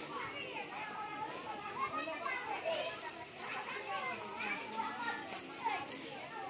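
Crowd chatter: many high voices of women and children talking over one another.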